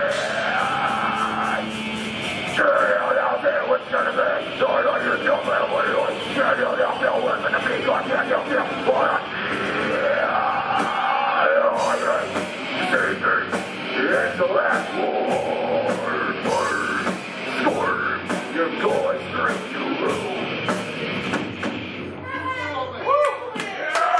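Live heavy metal band playing: distorted electric guitars and bass, drum kit with dense cymbal hits, and a singer's shouted vocals over the top.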